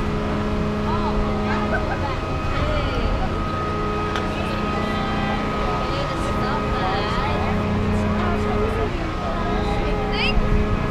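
Swinging boat amusement ride running: a steady machine hum with a constant high whine and a low drone that comes and goes every two to three seconds, with scattered voices of riders over it.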